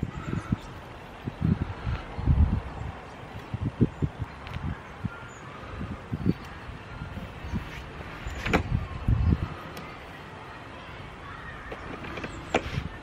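Irregular rustling and dull thumps of carrots and weeds being pulled by hand from the soil of a raised bed and put into a plastic garden trug, with one sharper knock about two-thirds of the way through.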